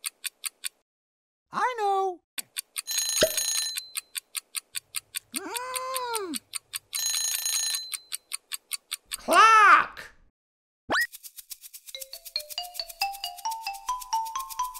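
Cartoon clock sound effects: a rapid ticking, broken twice by an alarm-clock bell ringing. Short cartoon voice exclamations come in between, and near the end a rising run of xylophone-like notes begins.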